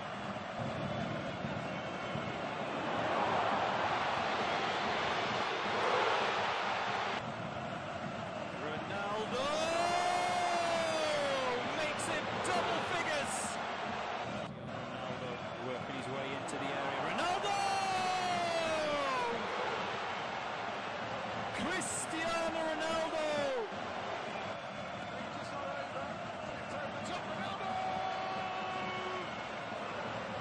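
Football stadium crowd noise from match broadcasts, swelling for a few seconds early on. Three times it is joined by a voice's long drawn-out call that rises and then falls in pitch.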